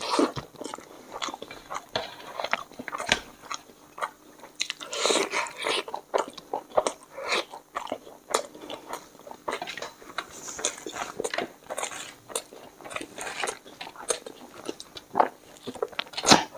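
A person eating rice and chicken by hand and chewing with his mouth open, giving a dense, irregular run of short wet smacks and crunches.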